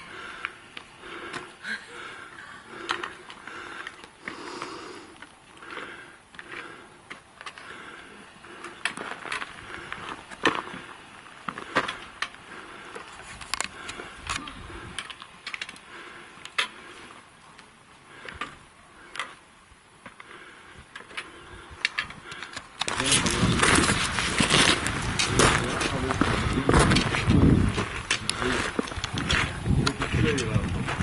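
Scattered clicks and crunches of footsteps and small stones on a loose rocky slope, with faint voices in the distance. About 23 seconds in, a much louder, rough, noisy rush starts suddenly and carries on.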